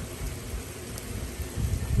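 Small white hail pellets falling steadily onto the ground and nearby surfaces, a fine even patter, with a low rumble near the end.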